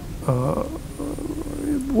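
A man's voice making hesitation sounds while searching for a word: a short "eh", then a long, level hum held for about a second.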